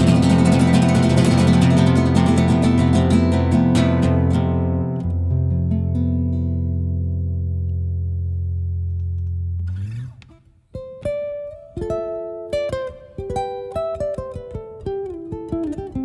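Solo nylon-string classical guitar: rapid strummed chords for about four seconds, then a chord left ringing and fading until it is damped about ten seconds in. After a brief pause, a picked single-note melody begins.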